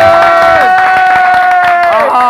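Men holding a long shouted vocal note, one voice dropping off about half a second in while the other holds almost to the end, with hands clapping along.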